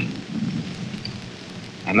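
Hiss and crackle of an old 1945 newsreel sound recording, with a low rumble in the first second, in a pause in a man's speech. The voice starts again near the end.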